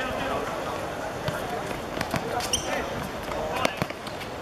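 A football kicked and bouncing on a hard outdoor court: several sharp thuds, the loudest near the end, over players' voices calling out across the court. A brief high squeak comes about halfway through.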